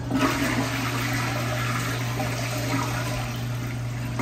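Toilet flushing: a rush of water that starts suddenly and keeps swirling and draining steadily through the bowl.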